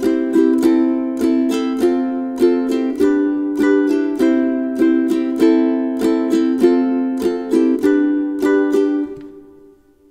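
Ukulele in GCEA tuning strummed in a steady down, down-up pattern through the chords C, A minor, F and G, changing chord on the first and third beats of each bar (non-syncopated chord changes). The last chord rings and fades out near the end.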